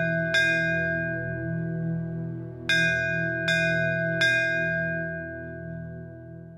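A bell struck over a steady low drone. One strike comes just after the start, then three more about three-quarters of a second apart beginning near the three-second mark, each ringing on and fading slowly.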